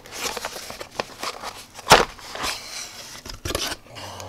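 Small cardboard box being handled and opened: scraping and rustling of the cardboard flaps with several short, sharp clicks, the loudest about two seconds in.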